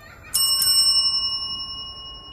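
A small, bright bell struck twice in quick succession, ringing on and slowly fading away.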